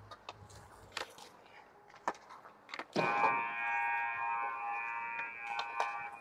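Sharp clicks of sticks and pucks on ice. Then, about three seconds in, a loud, steady rink buzzer starts abruptly and holds one flat tone for about two and a half seconds.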